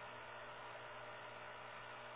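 Faint steady hiss with a low hum and no distinct events: room tone.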